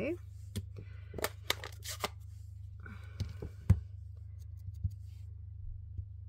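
Small clicks and taps of a plastic ink pad and a small clear stamp being handled: the stamp is inked and pressed onto cardstock, with a soft rustle near the middle and one sharp click a little past halfway. A low steady hum runs underneath.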